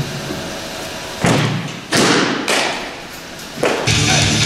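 Baseballs smacking into catchers' leather mitts during bullpen pitching: a few sharp thuds, the first a little over a second in and the last near the end, each echoing in a large hall.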